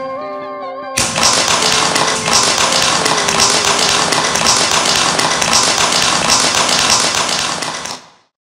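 A small group applauding, many hands clapping, starting sharply about a second in after a sung melody ends, with music still faint underneath; the applause cuts off abruptly at the end.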